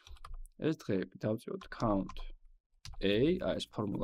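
A voice narrating in Georgian, with a few computer keyboard clicks in the pauses as an Excel formula is typed.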